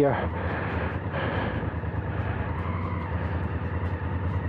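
Honda CRF1000L Africa Twin's parallel-twin engine running at low speed as the motorcycle rolls slowly forward, a steady low drone with no revving.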